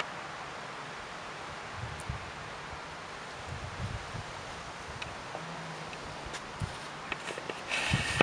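Outdoor garden ambience: a steady hiss with light rustling and a few soft low knocks, and a brief louder rustle near the end.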